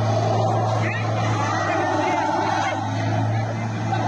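An SUV's engine running under load at a steady pitch as it is pushed through deep mud, its wheels working to get out of a bogged-down rut. The voices of the people pushing are heard over it.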